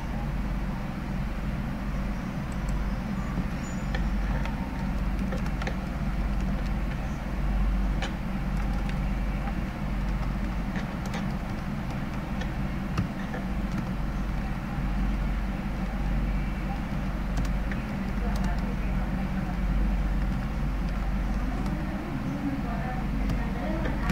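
Steady low hum under a background noise, with a few faint scattered clicks.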